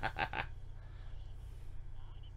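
A man's short burst of laughter, a quick run of 'ha-ha' pulses that stops about half a second in, over a steady low hum.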